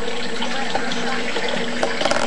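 Pellet stove's blower fan running: a steady rushing whoosh with a faint low hum and a couple of faint ticks. It runs during a restart attempt on a stove that is failing to light.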